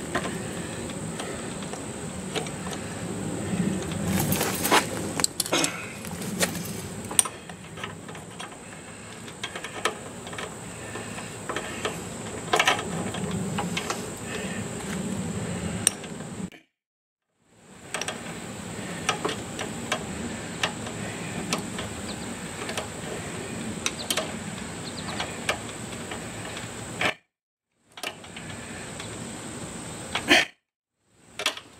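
Scattered clicks, taps and small metal rattles of hands working on a lawn mower's engine parts, with no engine running, over a steady background hiss and a thin high steady tone. The sound cuts out completely twice for about a second.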